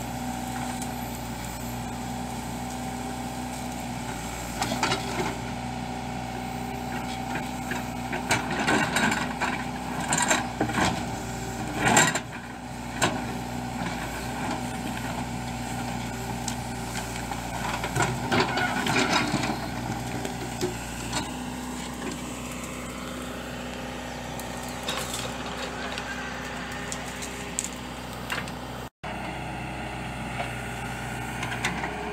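John Deere 310L backhoe loader's diesel engine running steadily under load as the backhoe digs into earth and brush. Sharp knocks and clatters from the bucket working the ground come in clusters through the first two-thirds, loudest about twelve seconds in.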